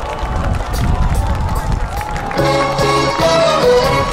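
Audience cheering and clapping, then about two and a half seconds in a live band with saxophone, brass and strings strikes up the opening of a song.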